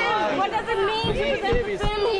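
Several people talking and calling over one another in a crowd, with no single voice standing out.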